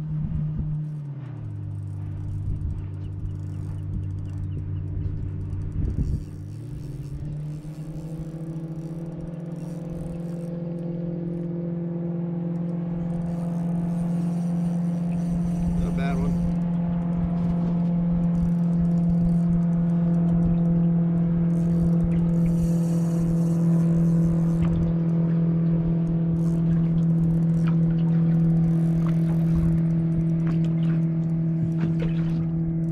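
Outboard motor running at low speed. Its pitch drops about a second in and comes back up about seven seconds in, then holds steady while growing slowly louder.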